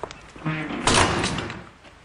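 Lift doors sliding, a single rush of noise that swells about half a second in and peaks about a second in.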